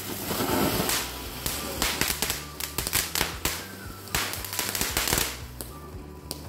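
Firecrackers going off: a hissing rush of sparks at the start, then a rapid, irregular run of sharp cracks and pops for several seconds.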